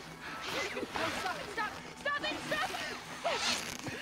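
Film soundtrack playing at low level: short, scattered voice sounds and gasps from a struggle, with faint music underneath.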